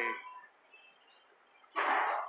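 A man's voice trailing off at the end of a sentence, then about a second of near silence. A short breathy burst of noise follows near the end, just before he speaks again.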